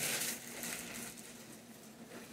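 Packaging being handled and rustled, a crinkling rustle that is loudest in the first half second and then continues more softly.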